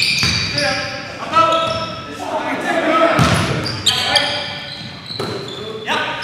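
Live basketball game in a gym: a ball bouncing on the hardwood, high-pitched sneaker squeaks on the floor, and players' calls, all echoing in the hall.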